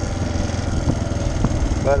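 Motorcycle engine running steadily under way, heard from on the bike.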